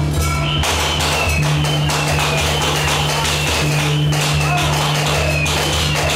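Loud temple procession music: a steady beat of drum and cymbal strokes under a sustained low tone, with a high note that slides down over and over.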